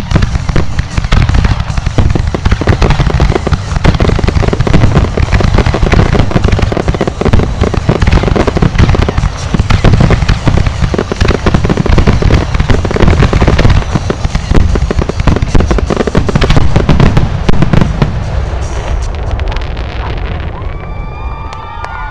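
Fireworks display firing a loud, dense barrage of rapid bangs that runs almost without a break, then thins out and dies away in the last few seconds.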